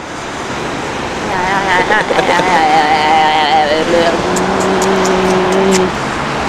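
A woman's wordless vocalizing, wavering in pitch for a couple of seconds, then holding one steady low note for about two seconds, over the constant noise of street traffic.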